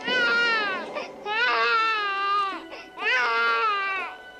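Newborn baby crying: three long wails, each about a second long and dropping in pitch at its end, with short breaths between them.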